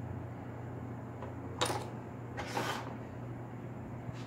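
Faint handling noises of small pistol parts being fitted into a Glock polymer frame: a light click, then two short scraping rustles, over a steady low hum.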